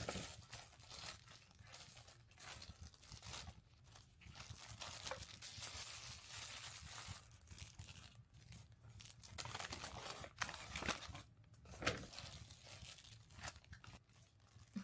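Clear plastic wrapper crinkling and tearing in quick irregular bursts as it is pulled off a bread bun by hand, with a couple of sharper knocks near the end.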